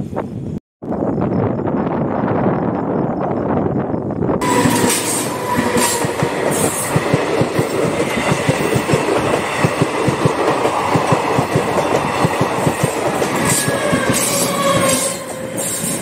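A passenger train passing close by on the track: the coaches run past with a rapid clickety-clack of wheels over the rail joints and a steady high whine from the wheels. It gets much louder about four seconds in and eases off near the end.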